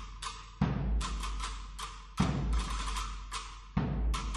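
The percussion section of an agrupación musical (Spanish processional band) plays on its own in a Holy Week march, with no brass. Heavy low drum hits fall about every second and a half, with sharper drum strokes between them.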